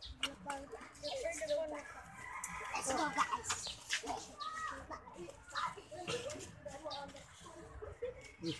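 Indistinct voices of several people talking, with chickens and a rooster heard in the background.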